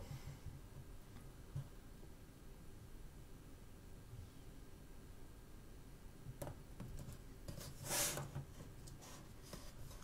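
Quiet room tone with faint handling clicks from fingers on the two phones and the wooden table. About eight seconds in, a brief soft rustle as the hands slide off the phones.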